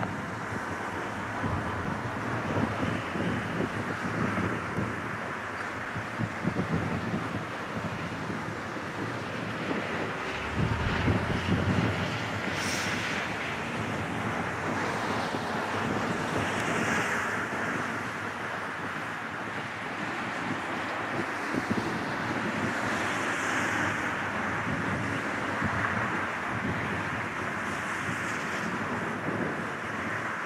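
Wind rushing steadily over the microphone, with a stronger gust partway through, over the distant sound of an Airbus A380's engines on final approach.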